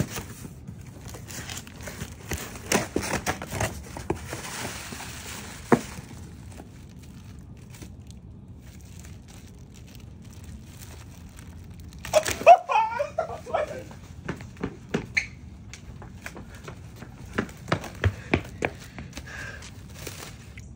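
A shipping package being opened by hand: irregular rustling, crinkling and tearing of packaging, with scattered handling clicks and knocks.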